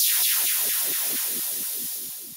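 Logo sting sound effect: a bright, hissing whoosh with a rapid run of falling sweeps, loud at first and fading steadily away.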